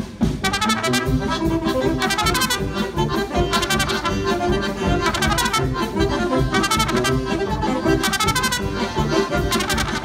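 Live brass polka band playing: accordion with trumpets, trombone and saxophones over a drum kit, in a steady bouncing beat.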